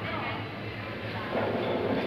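Busy indoor room noise: a steady low hum with indistinct background voices, a little louder in the second half.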